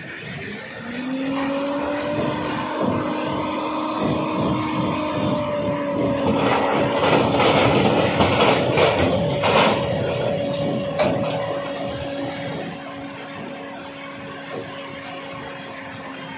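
Mobile rock crusher at work: a steady machine drone comes up about a second in, with a stretch of rock clattering and cracking through the middle that is the loudest part. The drone sags in pitch near the end.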